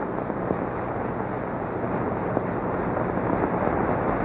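Steady hiss and rumble of an old, worn television soundtrack, with no distinct sound standing out.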